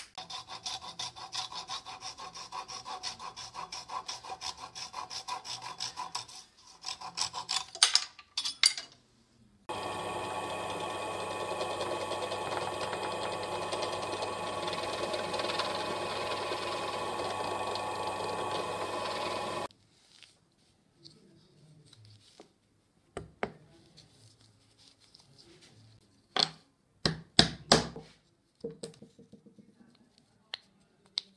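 Quick back-and-forth scraping strokes on wood for about six seconds. Then a benchtop drill press runs steadily for about ten seconds while boring a hole in a small merbau block, and stops suddenly. A few sharp clicks and knocks follow near the end.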